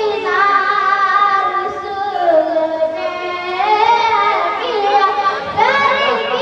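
A boy singing a naat into a microphone, holding long, drawn-out notes that bend slowly up and down in pitch.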